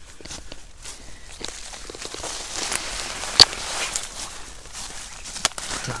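Footsteps through a thick layer of dry fallen birch and aspen leaves and twigs, a continuous rustle with small crackles and one sharp crack about halfway through.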